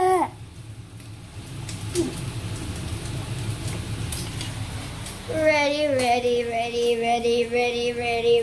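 A child's voice lets out a short falling cry at the very start, then, about five seconds in, holds one long steady vocal note for about three and a half seconds. In between there is only a low rumble.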